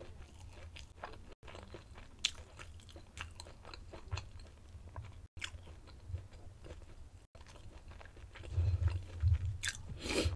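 A person chewing food close to a sensitive microphone, with small crunches and wet mouth clicks, louder near the end.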